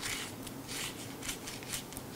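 A paintbrush flicking loose candy sequins off a cake board, heard as a few short, scratchy brushing strokes.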